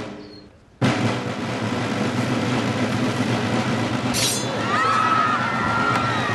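A steady snare drum roll starts abruptly about a second in and keeps going, the roll before a hanging. A brief hiss comes near the middle, and high wavering cries sound over the roll in the second half.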